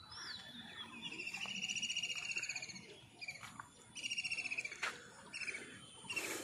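A songbird calling: a high, rapid trill lasting about two seconds, a shorter trill a little later, and a few short chirps in between.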